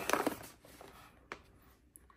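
Mostly quiet room tone after a word trails off at the start, with a single faint short click about a second in.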